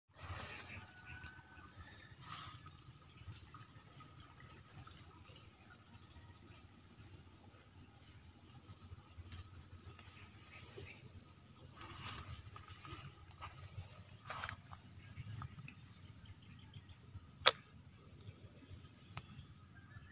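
A steady, high-pitched insect chorus with a pulsing trill beneath it, over low rustling and footsteps on grass. A single sharp click comes late on and is the loudest sound.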